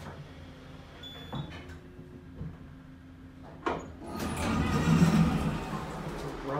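Elevator arriving at a floor: a steady low hum as the car runs and stops, a short high tone about a second in, a sharp click a little past halfway, then the car doors sliding open with a loud rumbling rattle near the end.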